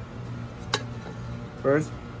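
Steady low background music or hum, with one sharp click about a third of the way in, then a woman's voice beginning to speak near the end.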